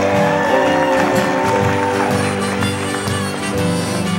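Steel guitar played with a slide bar and fingerpicks, its notes gliding in pitch, over strummed acoustic guitar in a live country-folk band.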